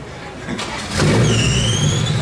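Lada 2105 rally car's four-cylinder engine starting about a second in and running, with a high, slowly rising squeal over it near the end.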